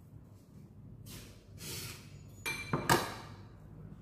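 Metal spoon scraping and scooping breadcrumbs twice, then two clinks of metal cutlery against a glass bowl about three seconds in, the second clink the louder.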